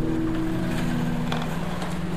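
Electronic music: a synthesizer chord held low and steady, with a deep drone beneath it.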